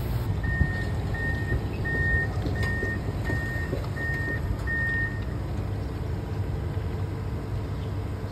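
Komatsu PC490HRD-11 high-reach demolition excavator's diesel engine running steadily, with a backup alarm beeping seven times at an even pace, a little more than once a second, stopping about five seconds in.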